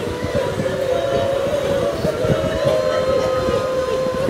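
A woman's voice wailing in long, held, slightly wavering cries of mourning, the lament that closes the Karbala narration.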